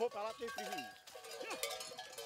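Bells hanging on the necks of a walking cattle herd, ringing with several overlapping, steady tones.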